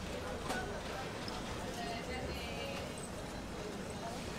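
Butane kitchen torch hissing steadily as it sears skewers of grilled eel, with faint background chatter around it.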